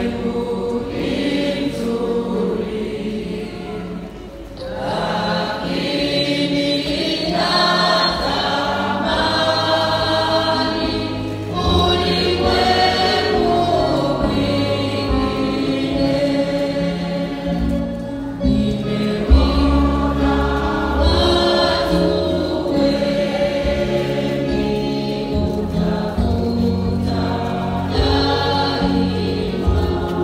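A church choir singing, with a brief lull about four seconds in.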